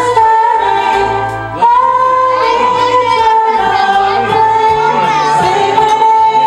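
Two women singing a duet into microphones, holding long notes that waver slightly, with a brief break about a second and a half in.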